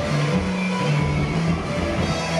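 Rock band playing live: electric guitars, bass guitar and drum kit, with bass notes moving under the guitars.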